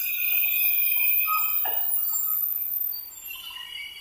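Several high, steady ringing tones that fade near the end, and a single knock about halfway through as a timber plank is set down on the stack.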